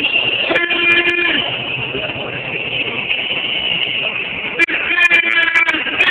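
Crowd noise of a marching street protest, with a horn sounding twice: a blast of about a second shortly after the start and a longer one with some sharp clicks near the end.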